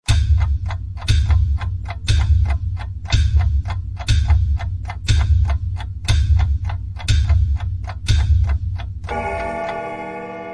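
Countdown-timer sound effect: clock ticks with a deep thud on every second, about nine beats, then a ringing chime that starts near the end and fades slowly.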